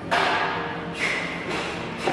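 Two whooshing swells of noise about a second apart, each starting suddenly and fading away: an editing whoosh sound effect.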